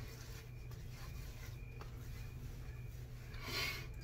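Faint rubbing of hands over a wet neck and beard, over a steady low hum, with a brief soft swell of noise near the end.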